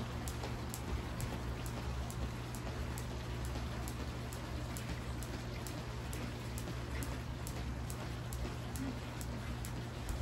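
Skipping rope slapping the concrete patio with each turn, in a steady rhythm of about three sharp ticks a second.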